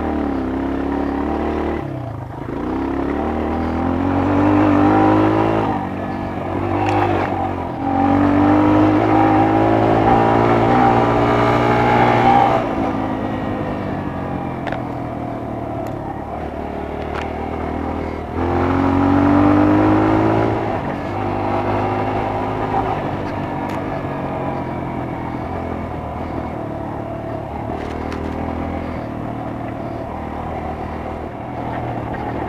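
Dirt bike engine running along a trail, revving up and easing off. The pitch climbs hard three times, the longest pull about a third of the way through, then settles to a steadier, lower run. A few sharp clicks are heard.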